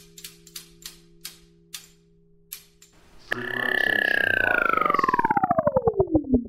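Intro sound design: a run of clicks that slow down over a low steady hum, then a brief lull. About three seconds in, a loud falling-pitch power-down tone starts, pulsing slower and slower as it drops.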